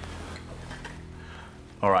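Quiet, steady low hum with no distinct knock or clink, then a man says "All right" near the end.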